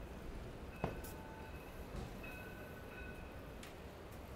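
City street background: a steady low rumble of traffic, with a sharp click about a second in and faint steady high tones on and off.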